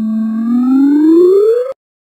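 Cartoon sound effect for pulling up pants: a single whistle-like tone gliding steadily upward in pitch and cutting off suddenly near the end.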